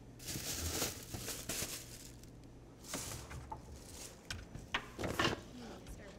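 Faint handling noises at a bench: a few short rustling hisses and light knocks as soap is poured into a bowl of water and stirred.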